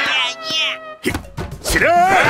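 Cartoon characters' squeaky, nonsense-word voices over music, then a sudden noisy clatter with sharp knocks about a second in, and a loud shout near the end.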